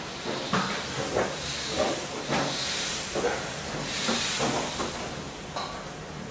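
A knife working yard-long beans on a cutting board: about seven irregular knocks and scrapes, with patches of hiss.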